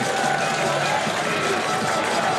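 Football stadium crowd cheering right after a penalty goal, a steady dense wash of many voices.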